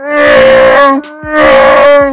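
Chewbacca's Wookiee roar played from a soundboard in a prank call: two long, pitched calls of about a second each, back to back.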